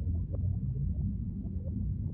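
Deep underwater-style ambience: a steady low rumble with faint short chirps and rising glides scattered above it.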